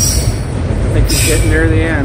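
Autorack freight cars rolling past: a steady, loud low rumble of steel wheels on rail, broken by sharp clanks at the start and about a second in, with a short wavering wheel squeal in the second half.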